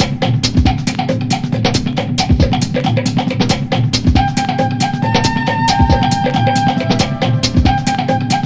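Background music: a steady drum-kit beat with regular bass-drum kicks, joined about halfway through by a held melody line.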